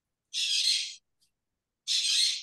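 A parrot calling twice through a participant's microphone on a video call: two calls of about half a second to just under a second each, about a second and a half apart, the first a third of a second in and the second near the end.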